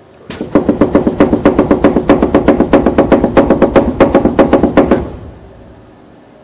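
Beater box of the Midmer-Losh organ's 64-foot diaphone sounding a note: a loud, rapid flutter of about eight beats a second. It starts about a third of a second in and dies away near five seconds.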